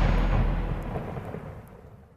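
Deep rumbling boom of a logo intro sound effect dying away, fading out to silence by the end.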